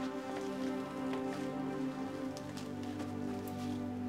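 Soft background music of long, sustained chords, with light scattered clicks and ticks over it.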